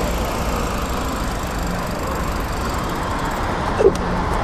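Street traffic: a car driving past at an intersection, heard as a steady low road rumble.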